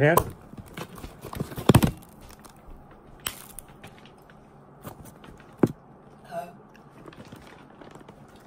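A knife blade tapped by hand into the shell of a steamed crab claw to crack it: a couple of sharp knocks just under two seconds in, then single cracks and small crackles of shell being broken open.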